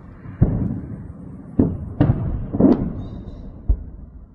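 Explosions during a missile attack: five booms in about three seconds, the first the loudest, each trailing off in a rumble.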